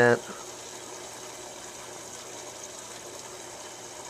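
Aquarium filter running: a steady wash of moving water with a faint low hum.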